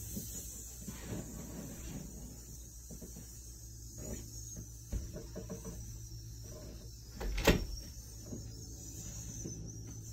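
Soft footsteps and movement of a person walking around a small room over a steady low hum, with one sharp knock about seven and a half seconds in.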